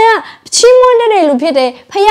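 A woman's voice preaching, raised high and pitched up with emotion, in long, drawn-out phrases.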